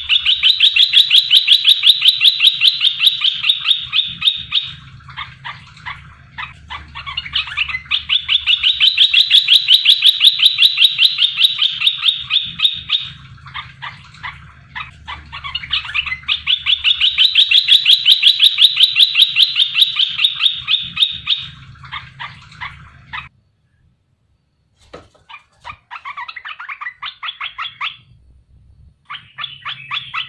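Bulbul (merbah belukar) calling in three long bouts of rapid, repeated notes, each about four seconds long with short pauses between, followed by a brief silence and shorter, fainter bursts near the end.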